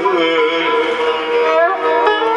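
A man singing a Turkish folk song (türkü) in long, wavering held notes, accompanied by a bağlama.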